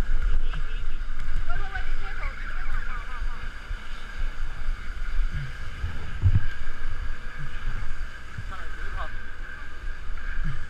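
Sound on a fishing boat at sea: wind rumbling on the microphone over a steady hum. Indistinct voices come and go, mostly in the first few seconds.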